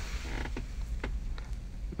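Leather car seat creaking, with a few light clicks, as a person shifts and turns in the seat.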